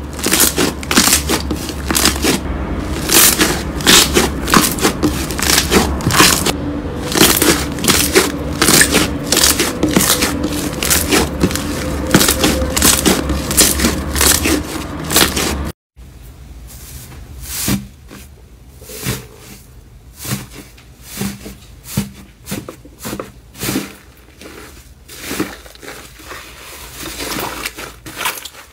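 Hands squeezing and pressing slime: a dense run of loud sticky pops and clicks, several a second. After an abrupt cut about halfway through, quieter and sparser squishes and crackles of slime being kneaded in a bowl.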